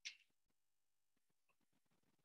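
Near silence, broken right at the start by one brief, sharp click that fades within about a third of a second.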